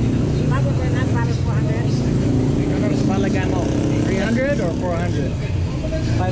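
A steady low mechanical hum under people talking.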